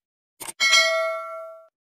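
Subscribe-animation sound effects: a quick click, then a bright notification-bell ding that rings for about a second and fades away.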